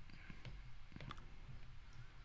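Faint clicks and taps of a stylus tip on an iPad's glass screen while erasing and writing by hand, a few separate light ticks over a low background hum.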